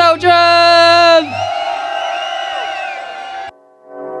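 A loud, drawn-out shout into a handheld microphone answering a call to "make some noise", lasting about a second. Cheering from the crowd follows over the music. The sound cuts off suddenly about three and a half seconds in, and the music comes back just before the end.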